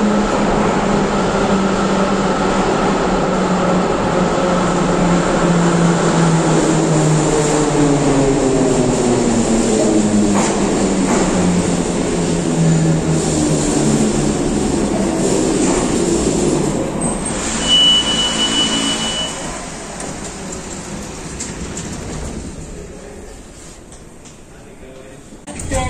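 Moscow Metro 81-717.5M subway train running into a station and braking to a stop, its traction motors whining in several tones that fall in pitch as it slows, over the rumble of wheels on rail. A brief high steady squeal comes about eighteen seconds in, and the noise dies down over the last few seconds as the train halts.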